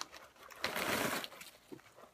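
Soft rustling of a foil-lined Goldfish cracker bag being handled and held open, lasting about a second in the middle.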